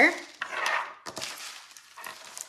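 A sheet of paper and a green plastic art tray being handled: a brief rustling scrape about half a second in, then a light click of plastic a little after a second.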